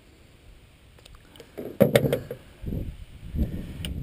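A quick series of sharp knocks and clatter against the boat, loudest about two seconds in, followed by a few duller thumps. This is handling noise while unhooking a largemouth bass with pliers at the gunwale.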